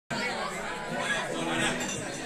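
Crowd chatter: many people talking at once in a room, with no music playing.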